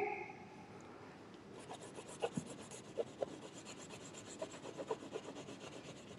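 Oil pastel scribbling on paper held on a clipboard: rapid back-and-forth scratchy strokes that start about a second and a half in, with a few sharper taps among them.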